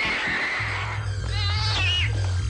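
Cartoon sound effect of a cat yowling, with a wavering cry in the second half, over background music.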